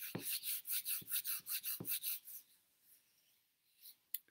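Quick scratching strokes, about five a second, with a few soft knocks among them, stopping about two and a half seconds in.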